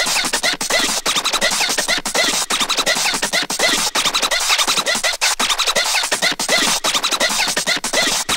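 Schranz hard techno playing in a DJ mix: a dense, noisy, driving loop of clicks and short repeating pitch-bending stabs, with little deep bass.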